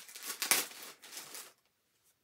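Plastic bag of cotton balls crinkling as hands dig into it, with one sharper, louder rustle about half a second in; the rustling stops about a second and a half in.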